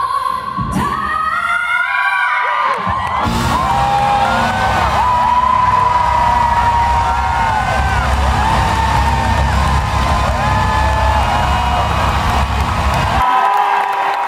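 Live concert: a rising run near the start, then the band playing a heavy bass groove while the crowd cheers and whoops over it; the bass cuts off suddenly shortly before the end.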